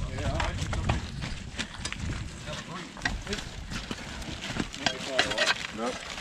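Working terriers whining excitedly amid knocks and scuffs of boots and broken bricks on wet ground, with a louder wavering cry about five seconds in.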